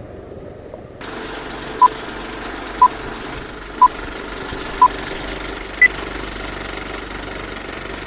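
Old-film countdown leader sound effect: a steady film-projector rattle and hiss with a short beep each second, four at one pitch and then a fifth beep an octave higher.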